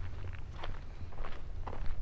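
Footsteps on a dirt road, irregular steps over a steady low rumble.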